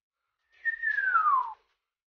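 A single falling whistle about a second long, its pitch sliding steadily downward.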